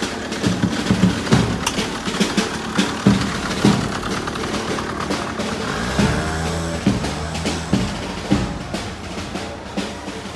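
Street procession drums, bass drum strokes with snare rolls, beating an uneven rhythm. About six seconds in, a car's engine passes close by, with a sliding pitch for a second or so.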